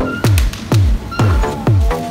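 Electronic dance track with a deep kick drum falling in pitch on every beat, about two a second, and short pitched blips between; the track is built from sampled everyday supermarket noises.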